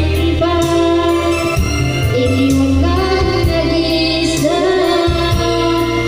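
A woman singing into a microphone over backing music, with long held notes.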